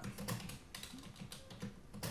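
Typing on a computer keyboard: a run of faint, quick key clicks.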